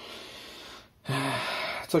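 A man's breath out, then after a brief pause about a second in, a breathy, voiced hesitation sound, like a sigh with voice in it.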